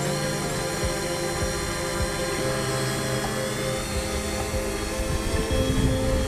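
Fimi X8 SE 2020 quadcopter's propellers and motors hovering close by: a steady multi-tone drone whine whose pitch shifts slightly a couple of times as the craft holds position.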